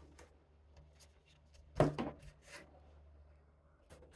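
White polystyrene foam casing being pulled out of a cardboard box and handled, with one sharp thump about two seconds in followed by a few short scraping rubs and faint clicks.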